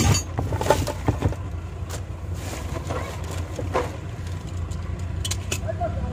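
Luggage being handled in a car's boot: knocks and crinkling of plastic bags, loudest at the very start, around a second in and again near the four-second mark, over a steady low hum.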